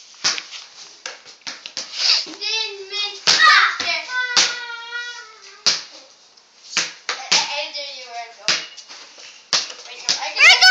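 Children's high-pitched wordless voices, calling and sing-song, mixed with repeated sharp knocks and thuds of play on a concrete floor. Among them is a basketball bouncing.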